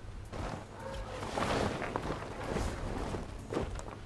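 Rustling of a deflated vinyl bounce house being handled and pushed about on a tarp, loudest in the middle of the stretch.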